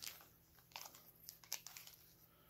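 Faint handling noise from hands working a small pendant and its cord: a few scattered light clicks, the sharpest about a second and a half in.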